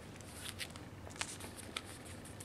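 Faint handling sounds from a pair of packaged knee-high socks with a cardboard label: soft rustling with a few light clicks and taps as they are turned in the hands.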